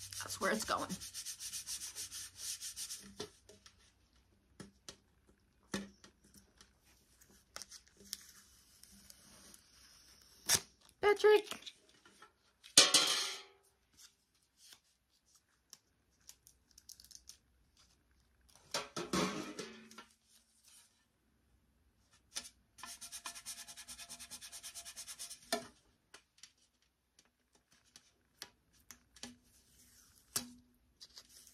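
Vinyl lettering being rubbed down onto a metal bucket through its transfer tape: bursts of quick scraping strokes near the start and again about three-quarters through, with a few louder short sounds in between.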